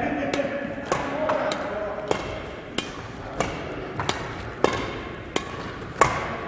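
Badminton rackets hitting a shuttlecock back and forth in a fast, flat drive rally: about ten sharp hits, one roughly every 0.6 s.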